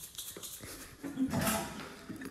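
Light clicks and knocks of toy kitchen pieces being handled, with a short vocal sound from a small child about a second in.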